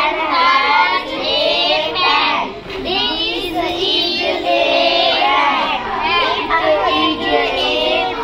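A group of children's voices singing together in a continuous chant.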